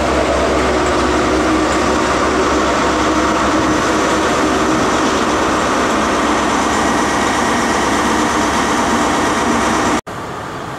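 CrossCountry HST Mark 3 coaches passing, a loud steady rush of wheels on rail with a deep rumble that eases a little after the first few seconds.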